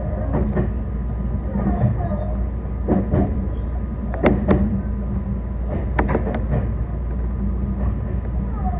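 Electric train heard from inside the cab running at low speed: a steady low rumble of wheels on rail, with sharp clicks as the wheels pass over rail joints and points, several close together about three, four and six seconds in.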